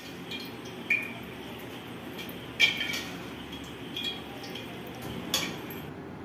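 A steel ladle clinking lightly a few times against a steel bowl and an iron kadhai as excess frying oil is taken out, the loudest clink about two and a half seconds in, over a steady low hiss.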